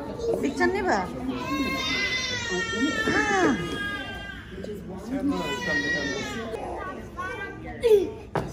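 A young child's high-pitched squealing cries: one long cry from about one and a half to four seconds in, and a shorter one near six seconds, with other voices around them.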